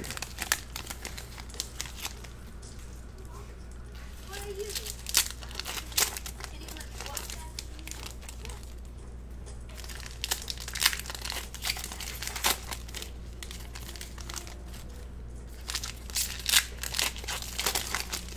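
Foil trading-card pack wrappers being torn open and crinkled by hand while cards are handled, in irregular bursts of crackly rustling. A steady low hum runs underneath.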